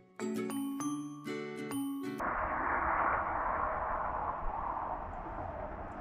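Bright, bell-like chiming music with a steady run of notes, cutting off suddenly about two seconds in to a steady outdoor hiss with a low rumble, like wind on the microphone.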